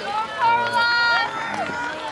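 Spectators cheering a runner on with long, drawn-out, high-pitched shouts, loudest from about half a second to a second and a half in.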